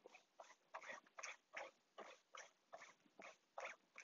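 Faint, quick scrubbing strokes of a brush's bristles working thinned glue into fabric laid over a plywood panel, about three uneven strokes a second.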